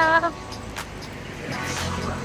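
Street traffic: a car going by, its low engine rumble and tyre hiss rising about one and a half seconds in. A woman's brief exclamation sounds at the very start.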